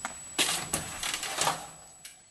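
Clattering: a run of sharp knocks and rattles, loudest about half a second in and again around a second and a half, then dying away.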